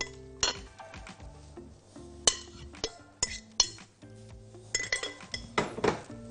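A glass bowl clinks against a glass serving dish several times, in sharp scattered clinks that come thicker near the end, as salad is tipped out of it. Soft background music with held notes plays underneath.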